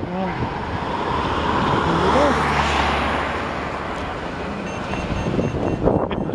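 A road vehicle passing by: its tyre and engine noise swells to a peak about halfway through, then fades, over steady street noise.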